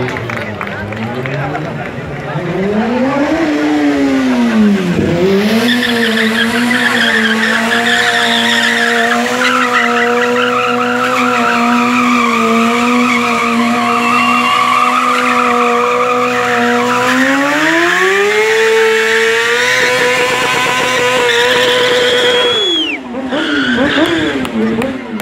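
Sport motorcycle engine revved and held at high revs with a squealing rear tyre, as in a stunt burnout. The revs climb higher near the end, then drop away suddenly about a second before the end.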